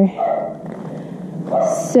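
Speech only: a man's voice in a short pause between phrases, ending with the start of another word.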